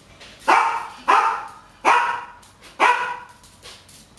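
Medium-sized mixed-breed dog barking four times, roughly a second apart.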